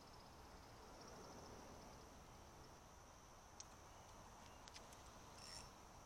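Near silence with a faint, steady high chirring of an insect chorus, and a few faint clicks.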